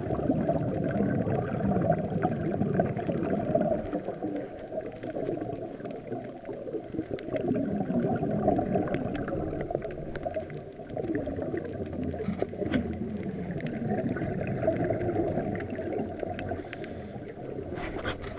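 Muffled underwater noise as a camera picks it up under water: a dense low rumble and crackle that swells and fades every few seconds.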